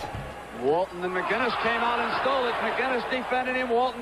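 Archival TV broadcast audio of a basketball game: an announcer talking over the arena crowd's noise. The sound is old and band-limited.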